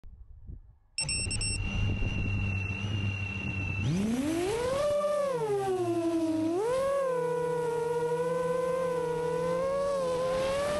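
Brushless motors of a seven-inch FPV quadcopter, starting suddenly about a second in with a steady high tone, then a whine that rises steeply in pitch about four seconds in, dips, rises again and holds steady as the throttle changes.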